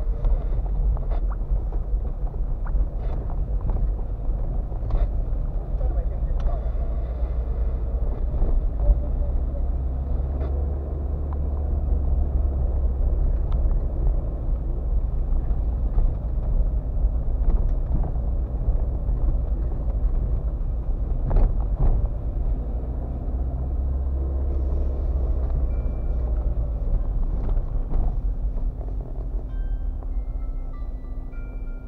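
Car cabin noise while driving slowly over a potholed dirt road: a steady low rumble of tyres and engine, with several sharp knocks as the wheels drop into holes and bumps.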